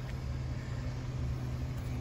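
2017 Cadillac XT5 idling, heard through the open driver's door: a steady low hum with one constant low tone.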